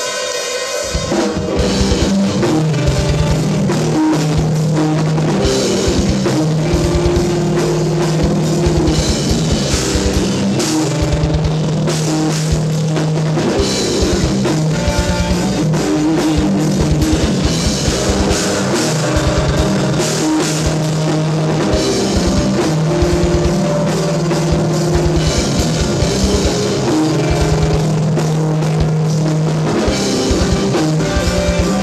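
Live metal band playing loud: drum kit with fast, dense bass-drum strokes and cymbals under distorted electric guitars and bass. The song kicks in about a second in.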